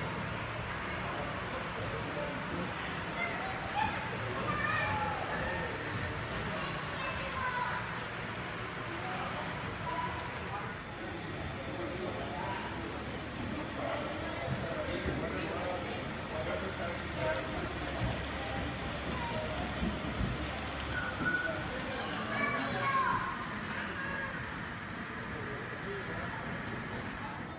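Indistinct background chatter of several people talking, over a steady low hum.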